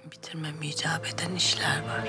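A woman speaking softly, close to a whisper, in Turkish, over quiet sustained background music.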